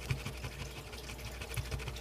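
A coin rapidly scratching the latex coating off a scratch-off lottery ticket: a fast, even run of soft scrapes.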